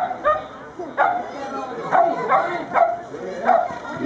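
Border collie barking as it runs an agility course: short, sharp barks, about seven in four seconds, coming every half second to a second.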